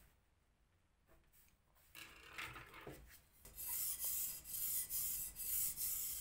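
Steel blade of a single-bevel kitchen knife drawn back and forth over a wet whetstone in repeated scraping strokes, starting about halfway through. This is the bevel (right) side being ground to raise a burr of turned steel on the flat side.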